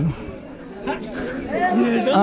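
Speech only: people talking outdoors, quieter for the first second, then clearer voices.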